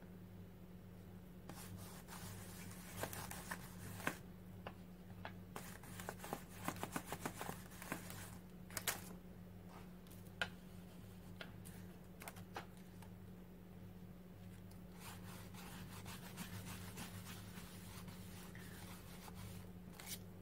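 Faint handling sounds of a stencil and paper on a journal page: scattered light taps and rustles, with a quick run of small ticks partway through, over a steady low hum.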